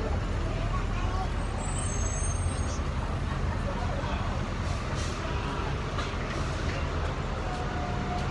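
City street traffic with a bus's diesel engine running close by, a steady low rumble.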